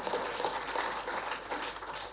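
Audience applauding softly, an even patter of hand claps.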